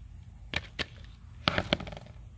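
Hands working chunky potting soil in plastic nursery pots: a few sharp crackles and taps, two about half a second in and a cluster of three near the end.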